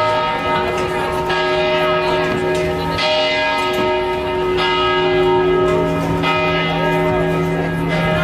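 A large bell tolling slowly, struck about every one and a half to two seconds, each stroke ringing on under the next, with crowd voices underneath.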